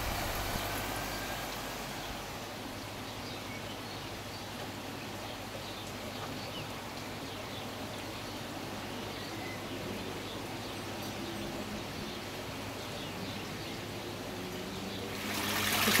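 Steady rushing and bubbling of water aerated by an airstone in a koi holding tub, over a low steady hum, with a few faint bird chirps.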